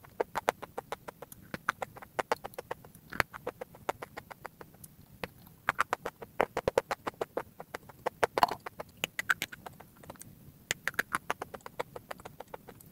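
Crunching of brittle, chalk-like white chunks being bitten and chewed: rapid, crisp crackles in several bursts with short pauses between them.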